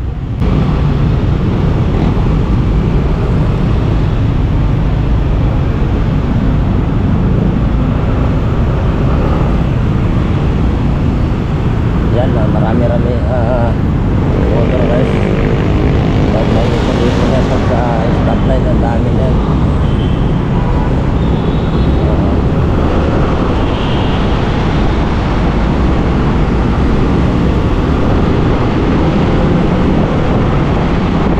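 Motor scooter engine and surrounding city traffic, a steady low rumble as the scooter pulls away from a standstill and rides slowly through traffic.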